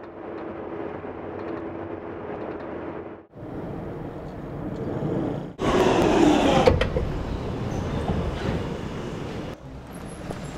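Steady vehicle noise in edited segments with abrupt cuts. A little past halfway it jumps to a much louder London Underground train running, heard from inside the carriage by its doors.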